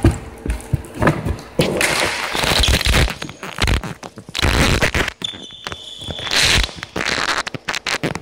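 Floorball play heard right by the goal: a run of sharp knocks, clatter and thumps from sticks, the plastic ball and bodies around the net, some of them close to the microphone. A short high-pitched tone sounds about five seconds in.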